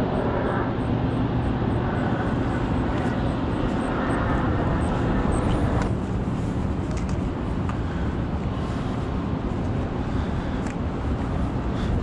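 Airplane flying overhead, its engine noise a steady wash that eases slightly about halfway through.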